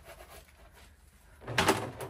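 Hand-washing a cloth in a plastic basin: faint handling sounds, then one short scrubbing, splashing noise about one and a half seconds in.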